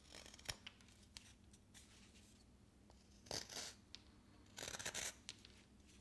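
Sharp detail carving knife with a palm handle slicing thin shavings off a basswood block: a few faint clicks, then two short, quiet scraping cuts a little past halfway. The edge cuts cleanly, showing the blade is very sharp.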